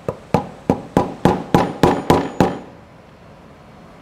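Hammer tapping a metal punch nine times in quick, even succession, about three and a half strikes a second, stopping about two and a half seconds in. The punch is bending a broken metal tab back over a small dash switch to hold it together.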